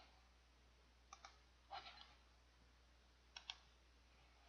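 Near silence over a faint low hum, broken by a few faint sharp clicks: a pair about a second in, a short one near two seconds, and a quick double click near the end.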